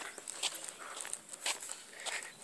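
Footsteps on soft garden soil: a few soft, separate steps at walking pace.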